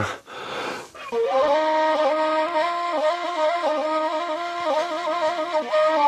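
End-blown cane flute playing a slow, ornamented melody: a breathy rush of air, then from about a second in long held notes that step and waver between pitches, stopping at the end.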